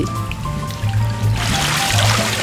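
Background music with a steady low bass line; about one and a half seconds in, indigo dye liquid starts splashing and trickling as dyed cloth is worked in and lifted out of a dye vat.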